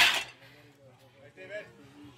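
A plate-loaded strongman bar set down onto metal rack stands: one sharp metal clank right at the start that rings off briefly, followed by faint voices.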